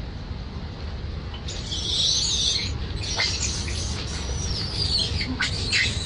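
Macaque screeching in high-pitched squeals from about a second and a half in: one long call falls in pitch, then short cries follow near the end, over a steady low rumble.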